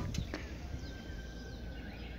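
Quiet outdoor ambience with a few faint, high bird chirps.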